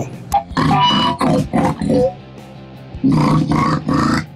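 Loud rock band playing in a rehearsal room: drum kit and amplified guitar, with harsh growled vocals. The music breaks off for about a second near the middle, then comes back in.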